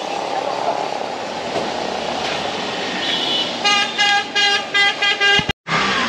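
Busy street traffic, then a vehicle horn honking: one beep about three seconds in, followed by a rapid string of short beeps, about three a second.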